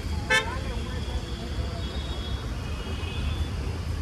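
Street ambience of slow traffic: a steady low rumble of car engines and tyres, with faint background voices. A short, single car horn toot sounds about a third of a second in.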